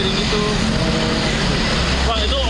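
Road traffic: a car driving past close by, a steady engine and road noise, with a deeper rumble coming in near the end.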